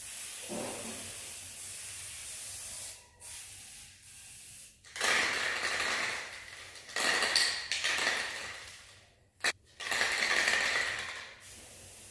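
Aerosol spray-paint can hissing in a series of bursts, each one to three seconds long, as paint is sprayed onto a canvas; the later bursts are louder. A single sharp click comes shortly before the last burst.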